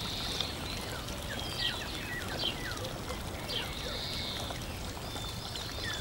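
A low, steady hiss with faint, short, falling chirps scattered through it.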